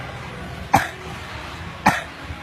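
Two short, loud coughs close by, about a second apart, over a steady background hum.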